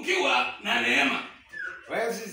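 A person's voice crying out loudly without clear words, in two long cries followed by a short rising cry near the end.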